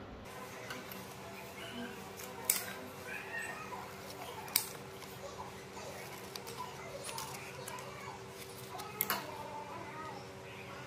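Scissors snipping through stiff leaves, three sharp snips about two and a half, four and a half and nine seconds in, over a faint steady hum.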